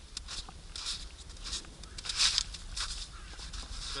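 Footsteps crunching in snow, about two steps a second, the loudest about two seconds in.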